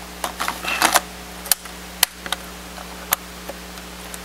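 Toughbook CF-19 battery pack being slid into its bay and seated: a short run of scrapes and clicks in the first second, then single sharp clicks and knocks spaced out over the next few seconds, over a steady low hum.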